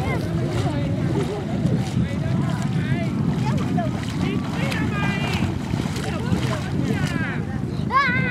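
Wind rumbling on the microphone over shallow seawater, with children's high voices calling out briefly a few times.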